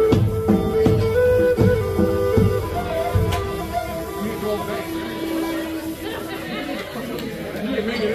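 Native American flute playing held notes over a drum kit. The drumming stops about three seconds in, and the flute ends on one long low note about seven seconds in, with crowd chatter beneath.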